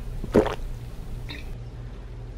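A person swallowing a swig from a glass bottle: one loud, sharp gulp about half a second in, then a fainter mouth sound about a second later.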